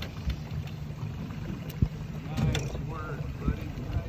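Outboard motor idling with a steady low rumble, and a sharp knock a little under two seconds in.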